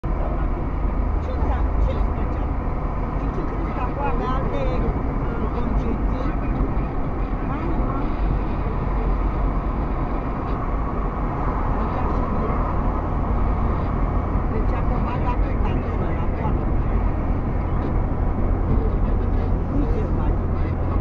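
Road and engine noise inside a moving car's cabin, picked up by a windscreen dashcam: a steady low rumble of tyres and engine at road speed.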